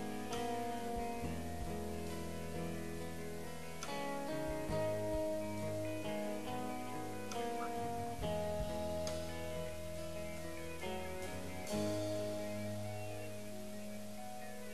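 Live rock band playing an instrumental passage with electric and acoustic guitars, sustained chords changing every few seconds.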